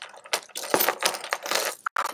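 A purse's chain strap, metal chain links and a plastic chain, clinking and rattling in a quick series of short clicks as it is lifted and handled.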